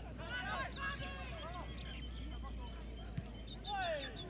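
Distant voices calling and shouting across a football pitch during play, loudest in the first second and again near the end. A single dull thump comes about three seconds in.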